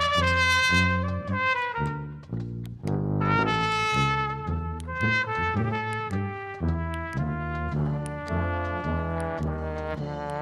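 Live brass band with trumpet and trombones playing a melody of long held notes over pulsing low bass notes. This is the instrumental opening of an old Russian prison song, played in an Eastern European folk style.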